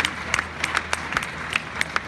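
Audience applauding, with sharp, irregular claps from hands close by standing out over the wider clapping of the hall.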